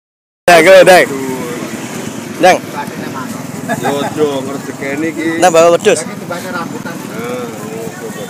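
People talking and calling out at an outdoor market, with loud exclamations just after a brief silence at the start, about 2.5 seconds in and near 6 seconds, over steady background noise of the market and passing traffic.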